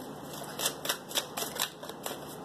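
A tarot deck being shuffled by hand: a quick run of soft card slaps and rustles, about eight in two seconds.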